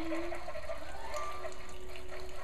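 Single-serve pod coffee maker brewing: a steady hiss of water being pumped and run through the machine into the mug.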